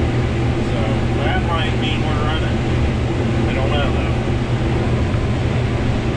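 Combine harvester running while shelling corn, heard from inside the cab as a steady low drone of engine and machinery.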